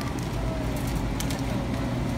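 Steady background noise of a large warehouse store, with a low hum and a few faint clicks.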